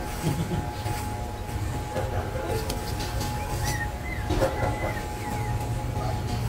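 Corded electric hair clippers running with a steady buzz as they cut a boy's hair short.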